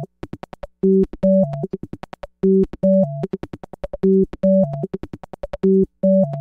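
Eurorack modular synthesizer jam: a short phrase of pure-sounding synth notes stepping up in pitch, followed by a fast run of clicky electronic percussion hits, the pattern repeating about every second and a half.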